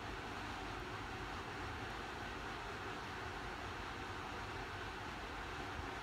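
Steady, even background hiss of room tone, with no distinct events.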